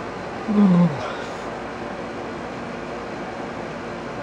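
A young man yawning aloud, a short groan that falls in pitch about half a second in. A room air conditioner runs steadily underneath.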